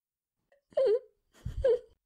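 A woman whimpering: two short, wavering sobbing whimpers, one just under a second in and the next about half a second later. It is acted crying after a blow.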